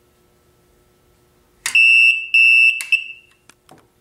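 Piezo buzzer on a door-lock alarm board sounding a high, steady beep: two beeps of about half a second each, starting about a second and a half in, then a shorter third. The alarm sounds because its limit switch button is no longer held in. A couple of light clicks follow near the end.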